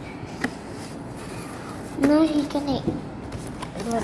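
A child's voice in a short utterance of about a second, starting about halfway through, over quiet room tone. A small click comes about half a second in.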